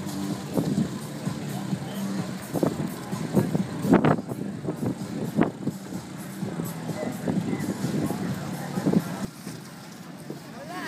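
Mixed outdoor event ambience: a steady low hum with voices and music in the background, and two sharp knocks about four and five and a half seconds in.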